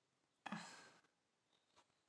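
A woman's single short sigh: one breath out about half a second in, starting sharply and fading within half a second, over near silence.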